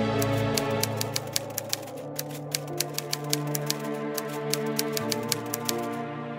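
Typewriter key-click sound effect: a quick, uneven run of clicks, about five a second with a couple of short pauses, over soft background music.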